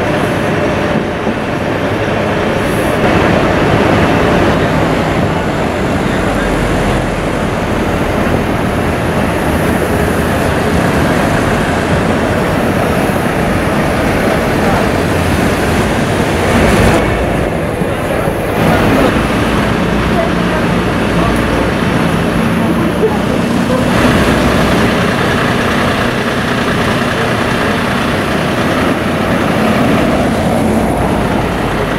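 A fire engine's diesel engine running steadily at idle, mixed with street noise.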